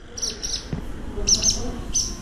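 Barn swallows giving short, high chirps, mostly in quick pairs, repeated several times.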